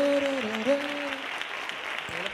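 Audience applauding, with a voice calling out a long note over the clapping during the first second or so.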